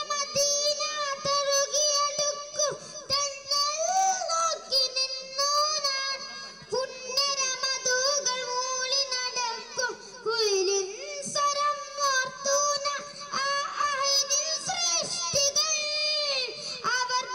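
A boy singing solo into a microphone: a melodic song in a high voice, with long held notes joined by ornamented, wavering glides, and short breaks between phrases.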